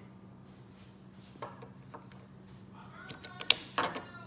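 Handling noise: a few light clicks and knocks, the sharpest about three and a half seconds in, over a faint low hum.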